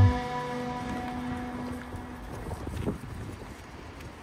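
Background music cutting off, a held note dying away over about two seconds, then outdoor wind noise buffeting the microphone in uneven low gusts over faint street ambience.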